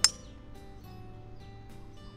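A 6-hybrid (utility club) striking a golf ball off the fairway: one sharp, loud click just after the start with a brief bright ring. Background music plays throughout.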